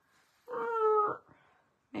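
A single short, high-pitched voice-like call, under a second long, starting about half a second in.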